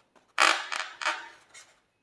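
An inflated latex balloon squeaking as fingers squeeze and rub its rubber skin. A couple of faint squeaks lead into a loud, drawn-out squeak about half a second in, which surges twice more before it stops.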